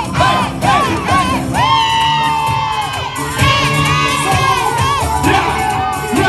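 A crowd cheering, shouting and whooping over loud dancehall music with a thumping bass beat.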